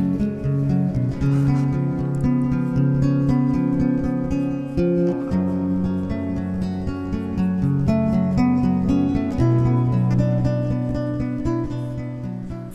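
Background music led by acoustic guitar, with plucked and strummed chords changing every second or two.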